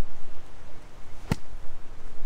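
A golf iron swung through the air in a practice swing, with no ball: one short, sharp swish about a second and a quarter in.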